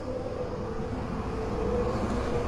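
Road vehicle noise: a steady low rumble with a droning hum, growing slowly louder.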